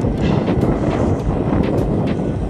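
Wind buffeting the microphone of a handlebar-mounted camera, with low road rumble from a road bike being ridden along tarmac.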